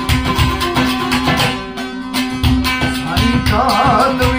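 Baloch folk music on long-necked lutes, strummed in a steady, driving rhythm over a held drone. A sliding melodic line comes in near the end.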